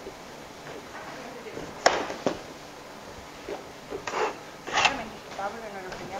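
Sounds of trays and linen cloths being handled on a bakery rack: a sharp knock about two seconds in, a smaller one right after, then brief rustles of cloth, with faint voices in the background.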